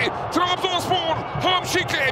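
A TV football commentator speaking continuously in a high, lively voice over steady stadium crowd noise.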